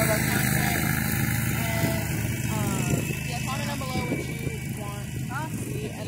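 An engine running with a steady hum, loud at first and fading after about two and a half seconds.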